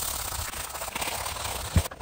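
A sneaker's foamed-up upper being scrubbed hard by hand with shoe cleaner: a steady, scratchy rubbing that stops just before the end.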